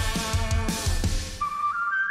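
K-pop song playing: a hard-hitting drum-and-guitar backing drops out about a second and a half in, leaving a lone high whistle-like flute melody that steps upward.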